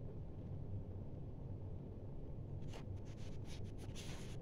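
Low steady room hum, then from about three seconds in a run of quick short scratches from a pen writing on paper.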